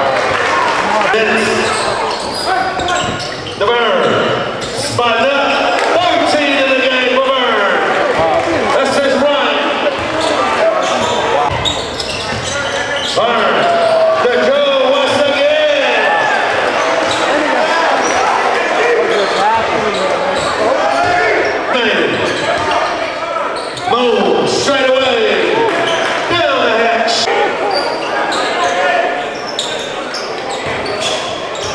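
Live basketball game sounds in a large gym: a ball bouncing on the hardwood court as it is dribbled, amid unintelligible shouting and chatter from players and spectators.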